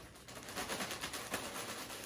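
Clear plastic bag of crushed chips being squeezed and kneaded by hand, a soft, dense crinkling and crackling as jelly is smeared through the chips.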